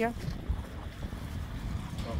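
Uneven low rumble of wind buffeting the phone's microphone.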